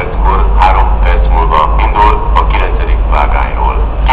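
Station public-address announcement: a loudspeaker voice speaking continuously, echoing over the platforms, with a steady low rumble underneath.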